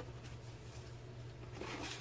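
Faint rustling and handling of Funko Pop protector boxes as they are unfolded and set up. The rustle is strongest near the end, over a steady low electrical hum.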